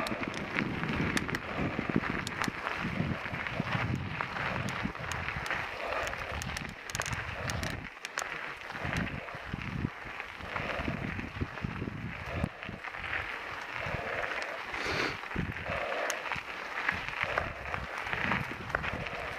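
Bicycle tyres rolling over a gravel trail: a steady crunching hiss with frequent small clicks and rattles from the bike.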